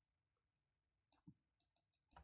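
Near silence: room tone, with a few faint short clicks about a second in.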